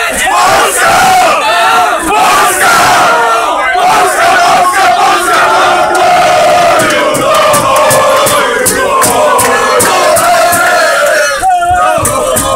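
A crowd of Polish football supporters chanting and shouting loudly together. A row of sharp hits runs through the second half.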